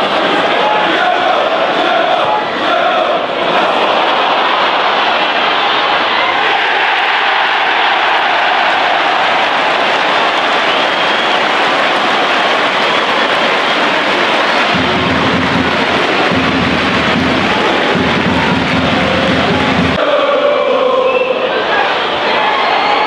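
Large football crowd chanting and singing, a steady dense wash of many voices. Near the end there are three stretches of low rumble.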